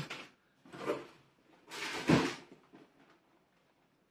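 Cardboard scraping and rustling as a boxed model kit is pulled out of a cardboard shipping box, in a few short bursts, with a thump about two seconds in.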